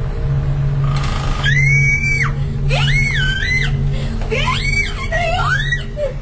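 A person screaming in four shrill cries, each sliding up and down in pitch, the first starting about a second and a half in and the last ending near the end.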